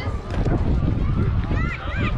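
High-pitched voices of youth softball players and spectators calling out, loudest near the end, over a low rumble of wind buffeting the microphone.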